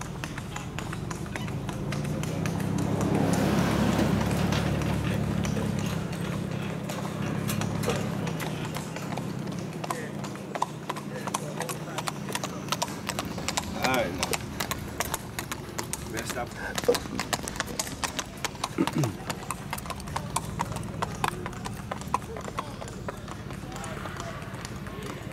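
Hooves of gaited Tennessee Walking Horses clip-clopping on an asphalt road in a quick, even patter of many hoofbeats, growing clearer in the second half. Over the first several seconds a low steady engine hum swells and fades.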